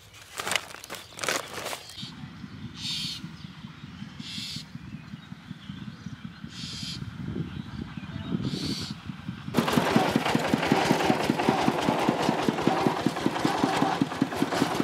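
Woven plastic sack rustling and crinkling as it is handled, then a low rumble with four short hissing bursts. About four seconds before the end a small farm tractor's engine cuts in suddenly and loudly, running with a fast, even chugging beat.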